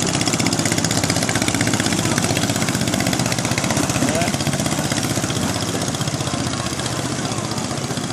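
Long-tail boat engine running fast as the narrow boat passes, a rapid, even firing rattle that eases slightly as the boat draws away.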